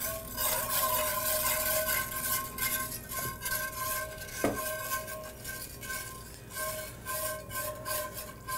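A wire whisk stirring gravy in a cast-iron skillet, with quick repeated scraping strokes against the pan as cream is poured in, and one sharper knock about halfway through.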